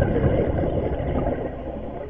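Steady, muffled underwater rumble and wash picked up by a camera in a waterproof housing, easing off slightly over the two seconds.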